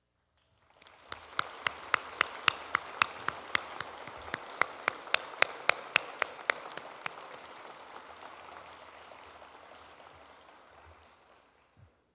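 Audience applauding, with one person's claps loud and close to the microphone, about three or four a second, for the first half; the applause then thins and dies away near the end.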